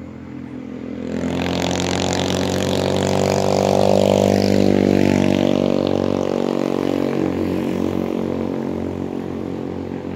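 A motor vehicle passing on the road: engine and tyre noise swell to a peak about four to five seconds in, then fade away, over a steady engine hum.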